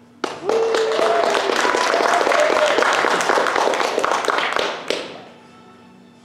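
Burst of applause and cheering: dense clapping with a whooping voice, starting suddenly, lasting about five seconds and fading out.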